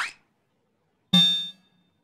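Sound effects from an animated slide intro: a short rising swish at the start, then a single plucked-sounding musical note about a second in that dies away within half a second.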